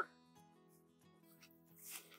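Faint background acoustic guitar music, with a brief soft hiss near the end.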